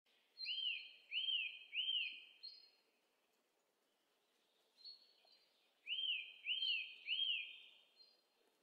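Bird-like chirping: a run of three quick rising-and-falling chirps, then after a pause of about three seconds another run of three.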